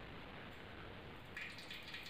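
Steady low hiss of a gas stove burner under a covered steel pot in which a cake is baking, with a brief light rustle near the end.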